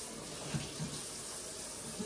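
Kitchen tap running, a steady hiss of water, with two faint knocks near the middle.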